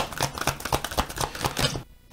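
A deck of tarot cards being shuffled by hand: a rapid run of small card-on-card clicks and slides that stops near the end.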